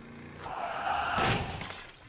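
Off-screen crash of a motorbike into an electric pole, with shattering and breaking. The noise swells from about half a second in, peaks past the one-second mark and then fades away.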